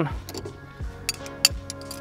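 Background music with a soft steady beat, and over it a few sharp metallic clicks and clinks, about a second in, from wrenches tightening the lock nut against the shift-knob adapter on the shift lever.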